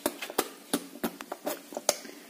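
Light, irregular clicks and taps, about eight in two seconds, from a child pretend-eating play-doh ice cream with a small spoon.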